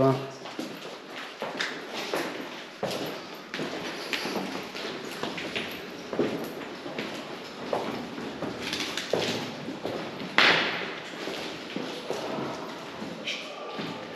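Footsteps and scuffs over a debris-strewn floor, with faint voices in the background and one louder sharp knock about ten seconds in.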